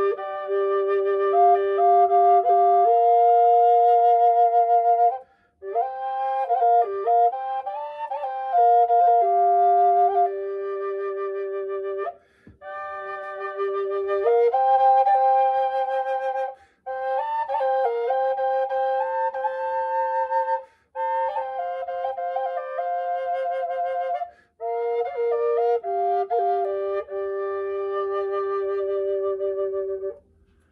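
A six-hole harmony drone flute of western cedar, tuned to G, played as a melody in phrases: its two chambers sound together about a fifth apart, one often holding a steady note while the other moves. The phrases break off briefly about five times for breath.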